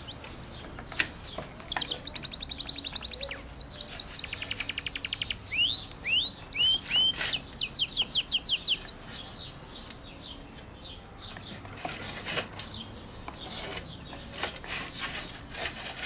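A songbird singing long, rapid trills of high chirps, several phrases in a row, which stop about nine seconds in; faint clicks and rustles follow.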